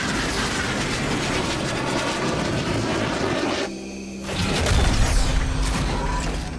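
Film sound effects under an orchestral score. A dense rush of mechanical noise gives way, after a short dip about four seconds in, to heavy low booms with whirring, clanking machinery: the stomping strides of a giant robot suit.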